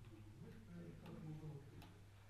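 Near silence: quiet room tone with a low steady hum and faint, indistinct low voices. Two faint sharp clicks come in the second half.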